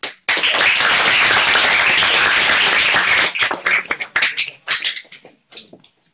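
Audience applauding: a sudden dense burst of clapping that thins out after about three seconds into scattered single claps and dies away near the end.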